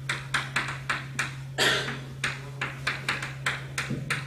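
Chalk tapping and scratching on a chalkboard while words are written: a quick run of sharp taps, about four a second, with one longer, louder stroke about a second and a half in.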